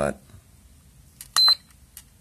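IMAX B6 LiPo balance charger giving one short, high-pitched beep as a front-panel button is pressed, with a faint click just before it.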